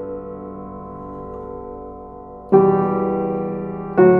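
Slow piano music: a held chord fades away, then a new chord is struck about two and a half seconds in and left to ring and die away.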